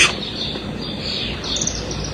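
Steady background hiss with faint high chirps, like small birds calling outside.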